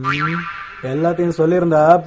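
A comic film sound effect, a quick glide falling in pitch, at the start, then a man's voice carrying on from about a second in.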